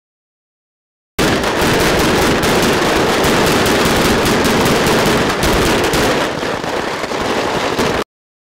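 Rapid, dense crackling pops and bangs of on-set pyrotechnic bullet hits (squibs) going off, very loud. They start abruptly about a second in, ease off slightly near the end and cut off suddenly.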